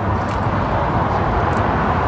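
Steady rushing noise of a vehicle nearby, with a couple of faint clicks.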